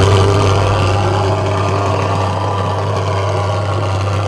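Handheld thermal fogger's pulse-jet engine running with a loud, steady buzzing drone while it pumps out insecticide fog.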